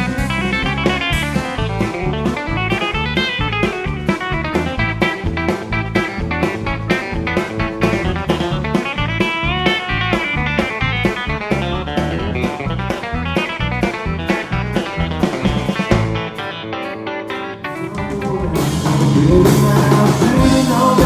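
A live band plays an instrumental with electric guitar lead over a steady drum-kit beat. About sixteen seconds in the drums drop out. Near the end a louder, different band performance cuts in.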